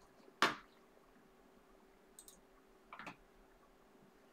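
Clicks of a computer mouse and keyboard: one sharp click about half a second in, then a few fainter clicks later on, over a faint steady hum.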